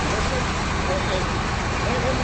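Steady low engine rumble with faint voices over it.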